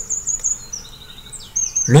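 Faint, high bird chirps in the background, a run of short repeated notes, some falling in pitch.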